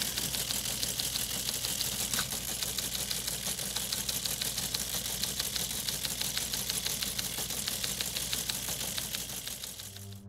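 Typewriter sound effect: a rapid, even train of key clicks over a low steady hum, cutting off suddenly at the end.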